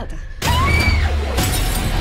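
A sudden loud shattering crash about half a second in, with a second hit about a second later, over a deep rumble and gliding high tones.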